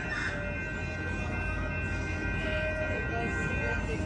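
Railroad grade-crossing warning bells ringing steadily as a train approaches along street track, over a low rumble.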